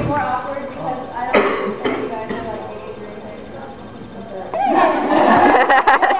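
Voices of a crowd in a hall, talking at once; the voices grow louder and busier near the end.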